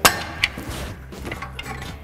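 Steel pry bars clanging against the rear CV axle's inner joint as it is pried out of the differential: one sharp metal clang at the start, a lighter click about half a second later, then a few faint clicks.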